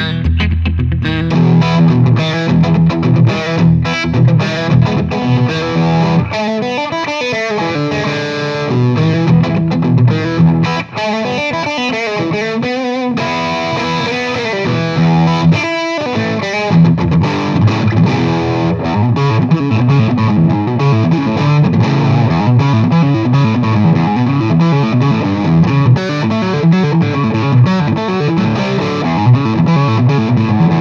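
Electric guitar played through an amplifier: a Gibson Custom Shop 1959 Les Paul Standard Historic with both humbucking pickups selected, playing a run of notes and chords with a short break near the middle.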